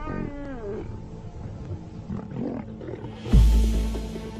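Lion growling and snarling as buffalo attack it, with a run of falling growls in the first second, over background music. A loud deep boom comes near the end.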